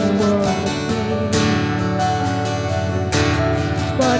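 Worship band playing an instrumental passage: acoustic guitar strumming chords over held keyboard chords, with strong strokes about a second in and again about three seconds in.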